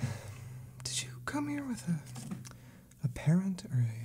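A man murmuring and half-whispering under his breath in two short stretches, with no clear words. A few soft computer-keyboard clicks and a low steady hum sit underneath.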